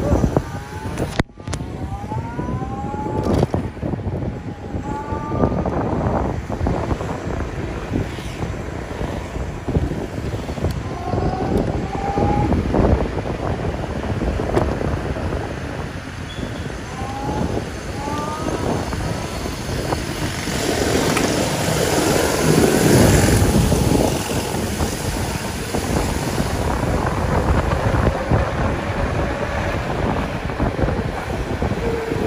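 Wind buffeting the microphone and road noise while riding an electric-converted Vespa scooter in traffic, with a few short rising whines along the way. The wind is loudest a little past two-thirds of the way through.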